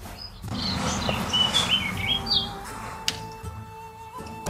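Bird chirping a quick run of short, high, gliding notes in the first half, over soft background music with sustained notes; a single sharp click comes near the end.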